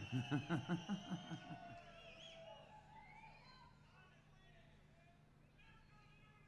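A man laughing into a stage microphone in a run of quick pulses that die away about two seconds in, leaving faint audience noise over a low steady hum.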